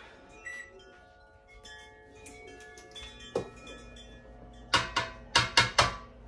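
Several ringing tones at different pitches sound one after another and slowly fade. Near the end comes a quick run of about six sharp knocks, a spoon tapped against the stainless steel bowl of a stand mixer.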